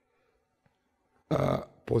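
Near silence, then about a second and a half in, a short, rough, throaty vocal sound from a man.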